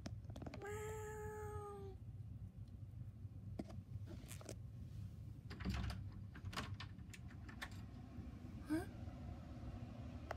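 A single drawn-out meow lasting a little over a second, holding a fairly steady pitch. It is followed by scattered light knocks and rustles of handling, and a short rising squeak near the end.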